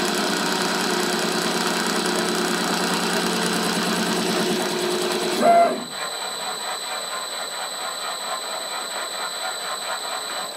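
CNC router spindle spinning a roll of aluminium foil against a blade, slitting the foil: a steady machine running sound. About halfway through there is a brief louder noise, and the heavier running sound stops, leaving a steady high whine.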